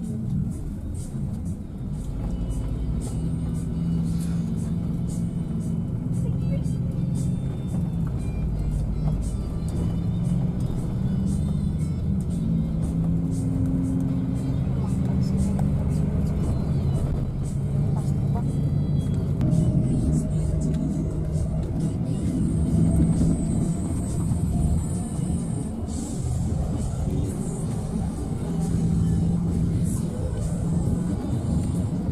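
Cabin noise of a Mercedes-Benz double-decker coach on the move, heard from the upper deck: a steady low engine and road rumble with frequent small rattles and knocks. Music and voices are mixed in over it.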